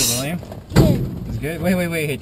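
Voices speaking quietly, with one sharp thump a little under a second in.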